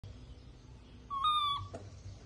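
A baby monkey gives one short, high-pitched call about a second in, lasting about half a second, with a slight step up in pitch and a drop at the end.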